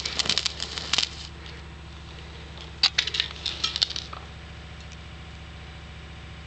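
Plaster-of-Paris thermite (coarse aluminium powder and calcium sulfate) burning down, sputtering with rapid crackles for about the first second, then a few scattered pops around three to four seconds in, over a steady low hum.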